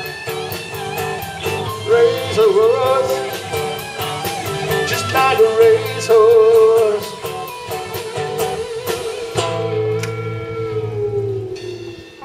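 Live rock band playing the last bars of a song on Parker and Gibson electric guitars, bass and drum kit, over a steady drumbeat. About nine seconds in the drums stop and a final held chord rings on and fades away.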